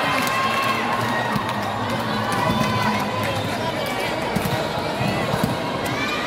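Crowd of volleyball spectators cheering and shouting, many voices at once, with a few sharp knocks through the noise.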